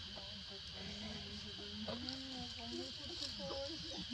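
People talking in low voices, over a steady high drone of insects.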